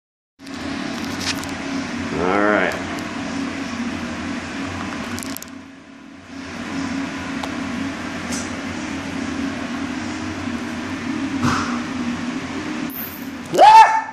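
A steady low mechanical hum that drops out briefly about six seconds in, with a short vocal sound about two seconds in and a man starting to laugh near the end.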